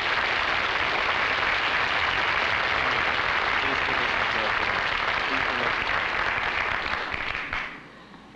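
Studio audience applauding steadily, the clapping dying away near the end.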